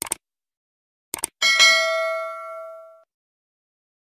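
Subscribe-animation sound effects: a quick double mouse click, another double click about a second later, then a bright bell ding that rings out and fades over about a second and a half.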